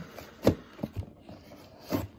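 Hands handling a package: a few sharp knocks, the loudest about half a second in, with faint rubbing and scraping between them.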